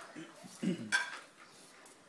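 A dog's food bowl knocking and clinking as a pug eats dry kibble from it, with one sharp clink about a second in.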